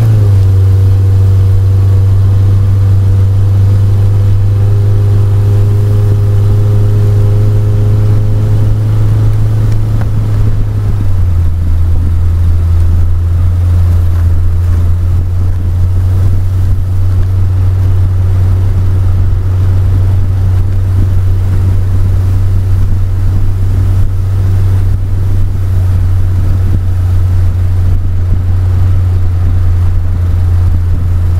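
Car engine and road noise inside the cabin while driving, a loud steady low drone that drops slightly in pitch about eleven seconds in.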